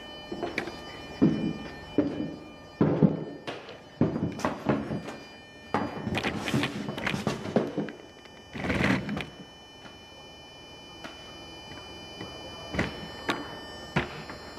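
Black umbrella's canopy flapping and snapping in a wind-tunnel airstream: irregular knocks and rustling bursts over a steady rush of air, busiest in the first nine seconds, quieter for a few seconds, then two more snaps near the end.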